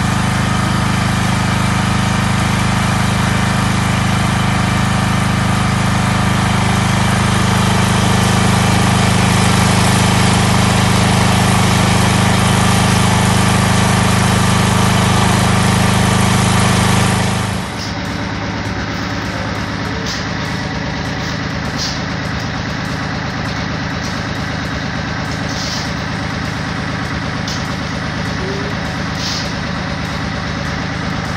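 An engine running steadily at a borehole, loud and constant, while water gushes from the discharge pipe. About 17 seconds in the sound cuts abruptly to a quieter, different steady engine hum with a few faint ticks.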